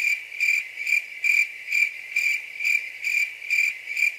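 Cricket chirping sound effect: a high, even chirp repeating a little over twice a second, the comic 'crickets' cue for an awkward silence.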